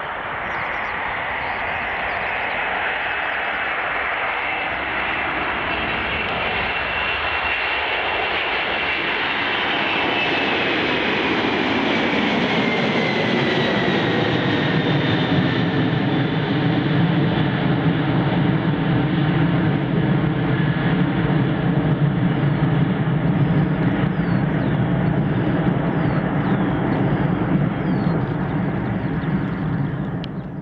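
An Antonov An-124's four Progress D-18T turbofan engines running. A high whine slides down in pitch about halfway through, then a deep rumble grows louder before the sound fades out at the end.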